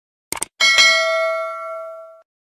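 Subscribe-animation sound effect: a short mouse-click sound, then a bell chime struck once that rings and fades away over about a second and a half, as the cursor clicks the notification bell.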